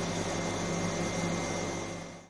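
Steady machine hum: a low drone with a faint high whine, typical of an appliance's motor or fan running.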